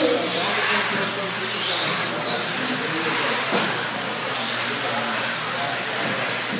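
Electric radio-controlled 4WD racing buggies running laps, their motors whining high and rising and falling in pitch as the cars speed up and slow down.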